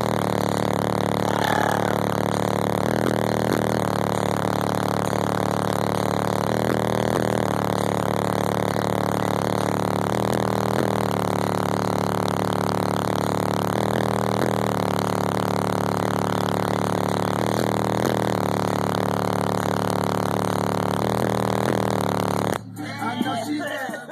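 Car-audio subwoofers in a ported wall playing bass-heavy music at very high volume inside the car, the bass notes stepping to a new pitch every second or two and heavily distorted on the recording. The sound cuts off abruptly near the end.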